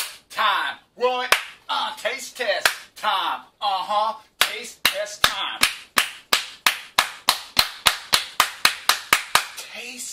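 A man's wordless vocalising and laughter, then about four seconds in a steady run of sharp hand claps, about four a second, lasting some five seconds.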